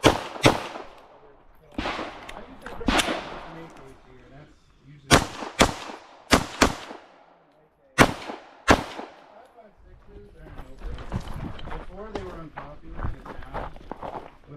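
Gunshots from a Glock 17 9mm pistol, about ten in the first nine seconds, mostly in quick pairs with short pauses between them.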